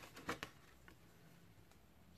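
A few faint paper rustles and light taps in the first half second as a sheet of thick 200 gsm craft paper is handled, then near silence.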